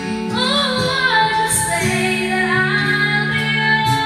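A woman singing into a microphone over instrumental accompaniment with long, held low notes. Her voice comes in just after the start.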